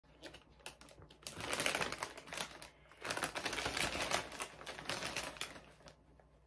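A Doritos chip bag crinkling as it is pulled out and handled: dense crackling in two bursts, the first starting just over a second in and the second from about three seconds in.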